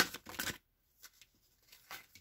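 A deck of tarot cards shuffled by hand: a quick run of short snaps in the first half second, then a few faint soft ticks as a card is laid down on the table near the end.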